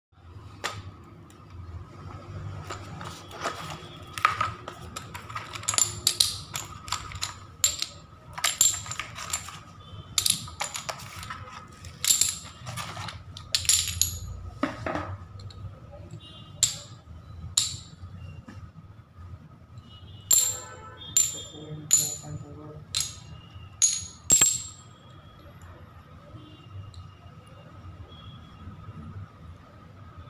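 Small glossy ceramic tiles clinking and clacking against one another and on the table as they are picked up, stacked and set down, in a long irregular run of sharp clicks, some with a brief bright ring. A faint steady high tone runs underneath.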